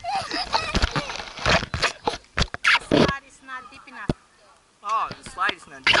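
People's voices talking and calling out close by, not clearly worded, with a few sharp knocks; a short lull comes past the middle.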